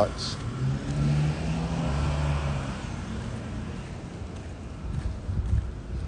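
A motor vehicle running on the street, its low engine sound loudest in the first few seconds and then fading into low outdoor street noise.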